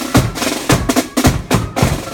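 Marching flute band's rope-tensioned side drums and bass drum playing a steady march beat, several strikes a second, with faint high notes held over the drumming.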